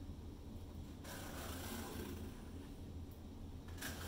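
Soft scraping from about a second in to near the end, as drips of wet acrylic paint are wiped off the edge of a tilted canvas, over a steady low hum.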